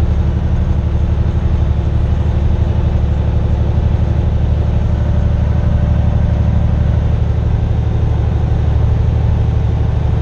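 Semi truck's diesel engine pulling steadily under load in ninth gear up a long mountain grade, heard from inside the cab along with road noise.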